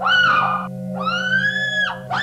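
Eerie electronic film-score music: a high, theremin-like tone swoops up and holds, twice, over a steady low drone.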